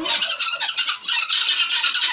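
A flock of domestic guineafowl calling all together: a dense, continuous chatter of rapid, high-pitched squawks.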